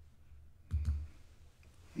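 A single soft click with a low thump about three-quarters of a second in, over a faint low hum.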